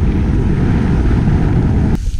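Loud, steady wind buffeting an action camera's microphone during a fast downhill ski run, mixed with the rush of skis running through snow.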